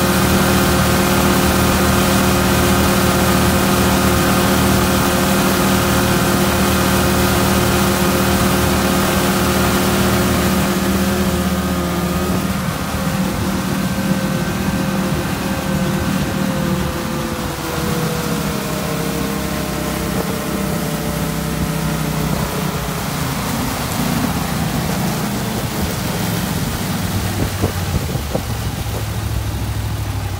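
Mud Buddy HDR 40 EFI surface-drive mud motor running at speed on a boat, with a steady engine note over a rushing hiss. About twelve seconds in it gets a little quieter and its pitch falls gradually over the next ten seconds as the motor slows.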